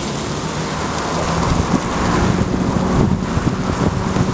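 Steady outdoor background noise: a rushing hiss with a steady low hum underneath, from street traffic and wind on the microphone.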